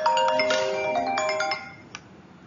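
A short electronic ringtone-style jingle of bright, bell-like notes at several pitches, fading out about a second and a half in.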